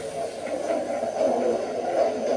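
A man's voice over a microphone, indistinct and smeared, with no clear words.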